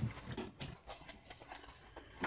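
Faint rustling and a few light knocks from a plastic accessory bag being handled and rummaged through as an item is taken out.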